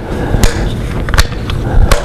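Handling noise from a switched-off hand-held router with a table mounting plate: three sharp clicks and knocks, about three quarters of a second apart, as the tool is gripped and its plastic and metal parts shift.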